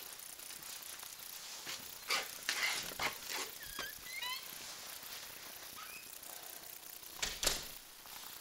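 A front door being handled and opened: a quick run of clicks, knocks and rattles, a few short high squeaks, then a louder thud near the end.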